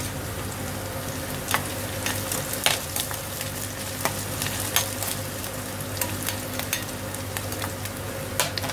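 Chopped onion and green chilli sizzling as they fry in a small pan, stirred with a slotted metal spoon that clicks and scrapes against the pan every second or so.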